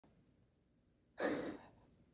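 A person's single breathy sigh, about a second in and lasting about half a second.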